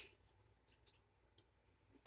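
Near silence, with a few faint clicks from a plastic earbud charging case being handled.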